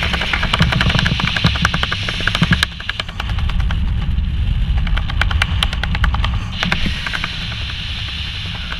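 Wind rushing over the microphone of a helmet camera under an open parachute canopy, with rapid flapping in the airflow. The rush dips and turns duller about three seconds in, and the hiss returns near the end.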